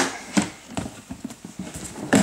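Plastic tub knocking and clicking against a wooden surface as it is handled: a string of uneven sharp knocks, the loudest right at the start.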